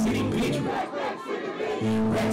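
Live hip-hop club show: a loud bass-heavy beat over the PA with the crowd shouting along. The bass drops out a little under a second in, leaving mostly crowd voices, and comes back just before the end.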